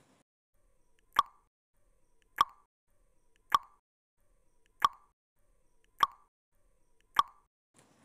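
Countdown-timer sound effect: six short ticks, about one every 1.2 seconds, marking the seconds given to answer a quiz question.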